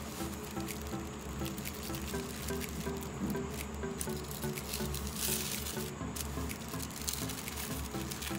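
Thin paper rustling and crinkling under hands as it is smoothed and folded on a desk, with a louder crinkle about five seconds in, over background music.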